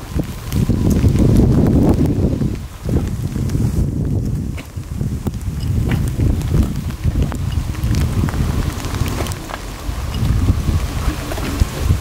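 Heavy wind buffeting on the microphone of a camera carried on a moving motorbike: a loud, rough rumble that rises and falls, briefly easing about three seconds in.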